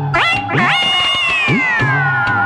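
Live band music with a regular drum beat. Over it, a high wailing line slides sharply upward twice in the first second, then holds and slowly falls in pitch.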